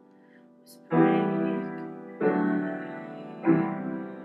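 Piano chords played slowly: three chords struck about a second and a quarter apart, each ringing out and fading before the next.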